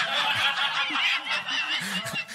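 High-pitched, squealing laughter that wavers up and down in pitch without words.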